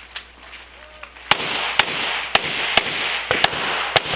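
A string of handgun shots, about seven sharp reports. They begin about a second in and come roughly half a second apart, with two in quick succession near the end.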